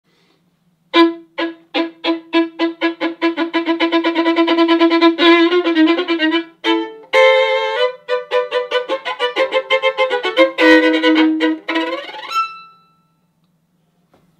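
Solo violin played with short, detached bouncing-bow (spiccato) strokes. Notes repeat on one pitch and speed up, then a quicker passage moves higher, and the last note is left to ring.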